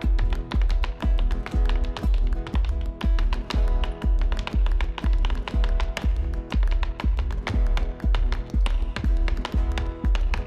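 Background music with a steady beat: a deep bass pulse about twice a second under quick, sharp percussive taps.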